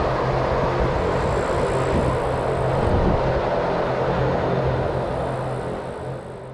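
Electric Wengernalp Railway train running across a steel bridge over a rushing glacial river: a steady low hum from the train over a broad rush of water, fading away near the end.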